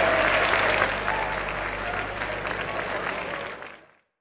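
Audience applauding: many hands clapping in a dense, even patter that fades out near the end.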